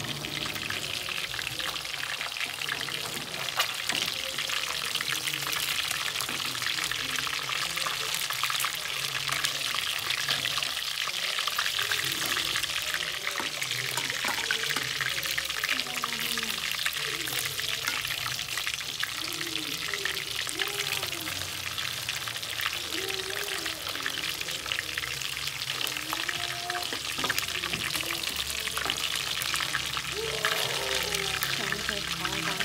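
Catfish steaks frying in shallow oil in a pan, a steady crackling sizzle.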